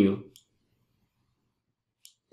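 The last word of a man's speech, then one short computer-mouse click about a third of a second in, and near silence after it.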